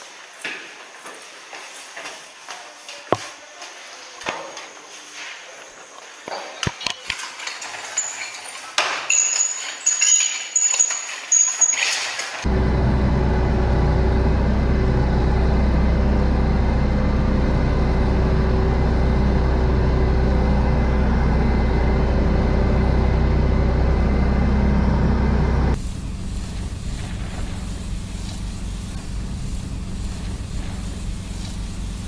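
Metal clinks and knocks as a portable spray canister and its lance are handled. From about twelve seconds in, a military tanker truck's engine runs loud and steady while it pumps water out through a hose onto the road. Near the end this gives way to a quieter steady sound.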